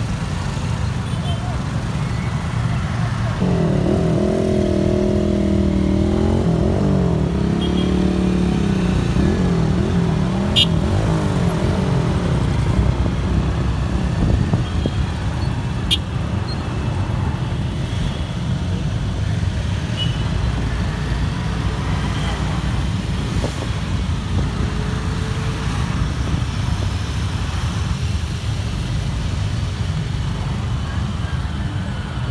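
Many motorcycle engines running together in a slow road procession, a steady low rumble throughout. From about 3 to 10 seconds a wavering pitched sound rises over it, and there are two short clicks later on.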